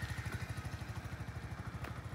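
Small motorcycle's engine running at low revs as it pulls away slowly, a steady, rapid low putter that fades a little as the bike moves off.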